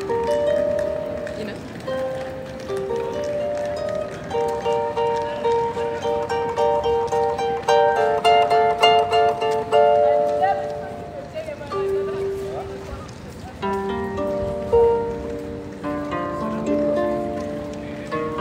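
Small lever harp (Celtic harp) played by hand: a slow melody of plucked notes that ring on and overlap. The playing thins out to a single note for a couple of seconds about two-thirds through, then resumes with lower notes joining in.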